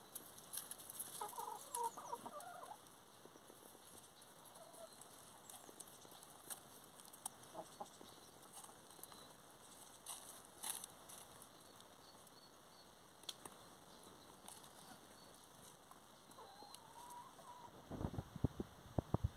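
Near silence with a few faint, short bird calls: some about a second in, a few more midway, and a rising call near the end. Faint scattered clicks are heard between them.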